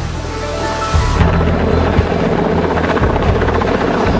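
Helicopter rotor and engine running steadily, a dense low beating sound that holds throughout. Background music notes sound over it for about the first second.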